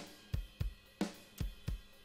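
Soloed drum track played back from the mix: kick, snare and hi-hat in a steady beat, with about five strong hits in two seconds.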